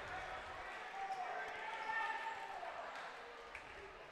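Gymnasium ambience during a basketball game: crowd murmur with faint distant voices calling out from the stands or benches, and a faint knock about three and a half seconds in.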